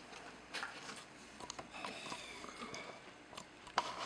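Faint rustling of a cardboard egg carton being lifted out of a glass tank, with a few light clicks and taps scattered through.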